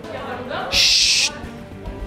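A short, loud burst of hiss about three-quarters of a second in, starting and cutting off suddenly after about half a second, just after a brief rising glide, over background music.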